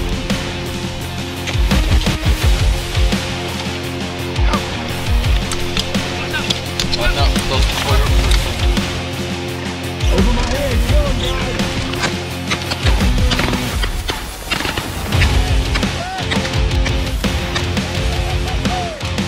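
Background music playing steadily, loud, with some voice-like sounds underneath.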